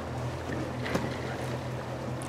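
Pontoon boat's motor running steadily with a low hum under the faint noise of open water and air, and one small click about a second in.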